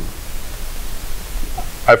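Steady hiss with a low hum underneath, in a short pause between a man's words. Speech starts again near the end.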